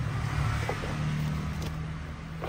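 Steady low motor rumble with a droning hum, like an engine running nearby, with a few faint knocks of sneakers being handled on a pile.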